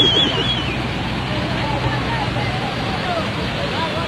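Muddy floodwater rushing in a steady, loud torrent across a road. A high-pitched wavering cry at the start and faint voices sit over it.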